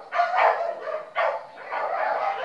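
A dog barking, three short barks.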